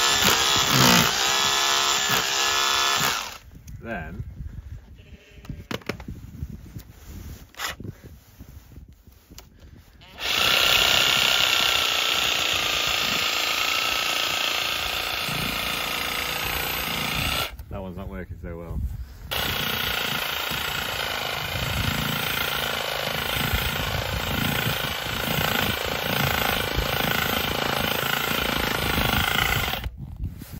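Makita cordless rotary hammer running with its bit down into the frozen water trough, chipping and breaking up thick ice. It runs in three long bursts: about three seconds at the start, again from about ten seconds to seventeen, and from about nineteen seconds to the end, with quieter pauses between.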